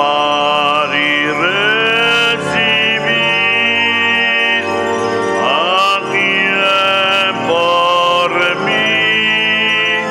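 A slow sung hymn: voices slide up into each note and hold it for a second or two, phrase after phrase.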